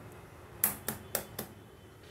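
An egg tapped against the rim of a kadai (wok) to crack it: four sharp taps about a quarter second apart, starting just past half a second in.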